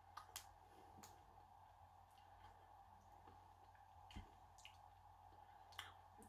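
Near silence with a low steady hum, broken by a few faint, scattered clicks of someone chewing a crispy chocolate bar with rice crisps and caramel.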